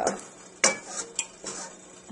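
Spatula scraping and clinking against a stainless steel bowl while stirring thick melted chocolate, a few short strokes with the loudest about two-thirds of a second in.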